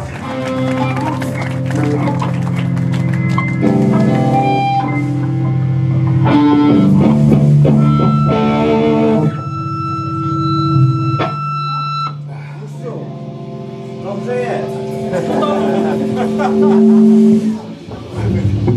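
Amplified electric guitars and bass in a small club, played loosely with long held notes and scattered picked phrases rather than a full song. A single steady ringing guitar tone holds in the middle, cut by a sharp click, with voices underneath.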